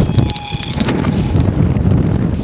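Strong wind buffeting the microphone, an uneven low rumble.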